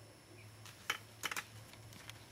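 A few light, sharp clicks, one about a second in and a quick run of three shortly after: small plastic makeup pencils and caps being handled and put down.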